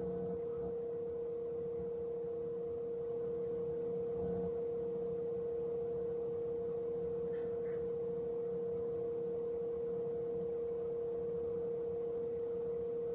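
A steady electronic hum: one constant mid-pitched tone with fainter tones beneath it, unchanging throughout.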